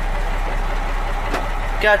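Mack AI-427 inline-six diesel engine idling, heard from inside the truck's cab as a steady low hum.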